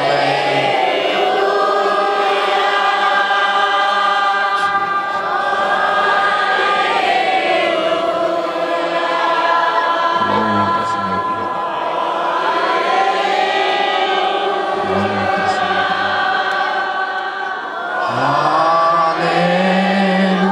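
A large congregation singing and praising together in many overlapping, long-held notes that swell and ebb every few seconds.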